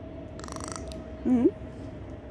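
A woman murmuring a soft, wavering "mm-hmm" about a second in, after a short hissy noise near the start, over a faint steady background hum.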